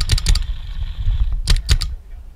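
Paintball marker firing in rapid strings: a quick burst of shots at the start, then a second short burst of about four shots near the end.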